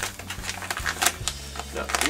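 Packaging and tackle being handled on a table: a run of light clicks, taps and rustles, over a steady low hum.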